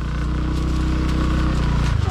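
Small motorcycle engine idling steadily, a low even hum.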